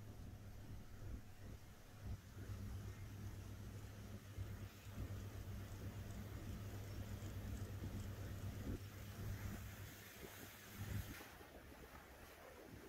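Faint, steady drone of a Carver 356 cabin cruiser's twin inboard engines running at cruise, about 3,300 rpm, with the boat on plane at around 20 knots.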